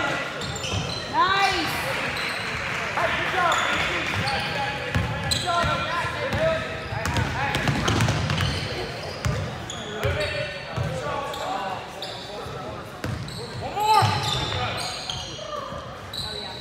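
Basketball game on a hardwood gym floor: a ball dribbled with short bounces, sneakers squeaking in short chirps, and indistinct voices of players and spectators, all echoing in the hall.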